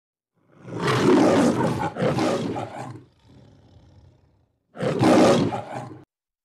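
A lion's roar sound effect over a logo intro: one long roar of about two and a half seconds trailing off quietly, then a second roar that cuts off abruptly.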